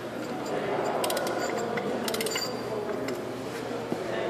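Torque wrench ratcheting on a truck hub's wheel-bearing adjusting nut, heard as two short runs of clicks about one second and about two seconds in, over steady workshop background noise.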